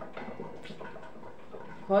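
A pause in a woman's talk: low room background with faint voice traces, then she starts speaking again near the end.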